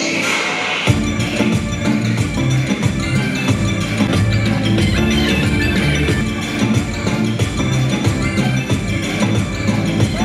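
Loud dance song with a steady percussion beat playing over PA speakers; a heavy bass beat comes in about a second in.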